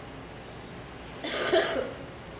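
A person coughing once, a short loud cough about a second and a quarter in.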